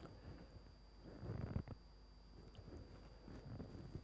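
Near silence: studio room tone with a faint steady high-pitched whine and low hum, and a soft brief sound about a second and a half in.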